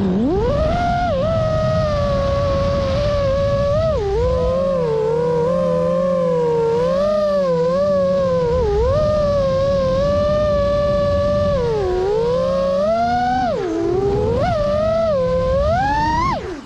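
Five-inch freestyle quadcopter in flight: its Xing2 2207 1855 kV brushless motors and Gemfan 51477 props give a loud whine whose pitch glides up and down continuously as the throttle changes, with sharp dips and climbs during manoeuvres.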